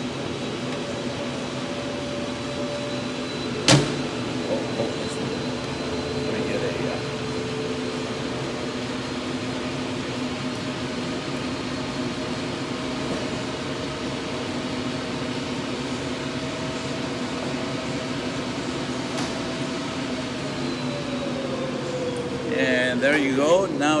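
Maha chassis dynamometer's rollers and drive motor running steadily at about 20 mph, with one sharp click about four seconds in. Near the end the hum falls in pitch as the drive motor switches off and the rollers coast down under load for the coast-down calibration.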